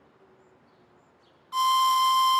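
A pan flute blown, sounding one loud, shrill, steady note that starts suddenly about one and a half seconds in, after near silence.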